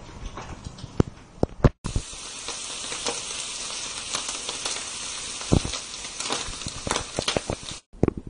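Gammon steak frying in olive oil in a frying pan, sizzling and crackling steadily for about six seconds. Before it there are a few sharp knocks in the first two seconds.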